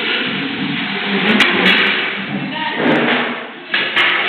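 Indistinct babble of many people talking at once in a classroom, with a few sharp knocks or taps about a second and a half in.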